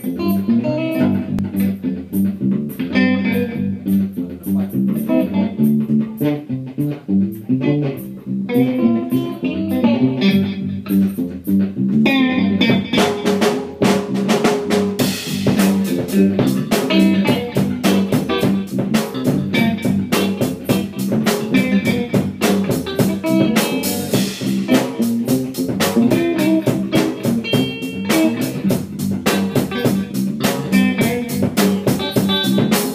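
Funk-blues band jam: a 1975 Fender Mustang electric guitar improvises over bass and drum kit. The drums get busier and fuller about twelve seconds in.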